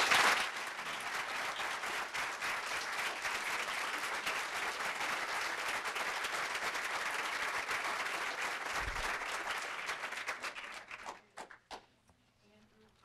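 Audience applause, loudest at the start, then steady clapping that thins to a few scattered claps near the end.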